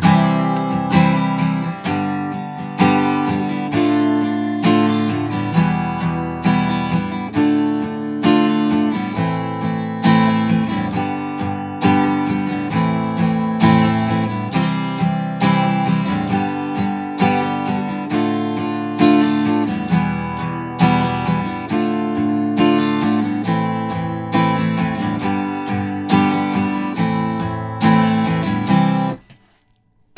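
Acoustic guitar strummed in a steady rhythm, playing the eight-bar progression C, G, D minor, E minor, D minor, A minor, G, A minor in the key of C. The strumming stops about a second before the end.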